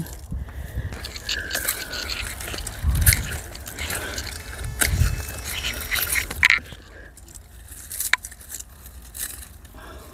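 Garden scissors snipping plant stems and dry foliage rustling: a scatter of sharp clicks and crackles, with two low rumbles around three and five seconds in.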